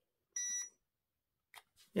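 A single short electronic beep, about a third of a second long, from a radio-controlled crawler's electronics as it is switched on while its receiver is being bound to the transmitter.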